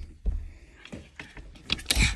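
Rustling, rubbing and light knocks of a phone being handled inside a cramped wardrobe, with a low rubbing rumble on the microphone at the start and a louder scrape near the end.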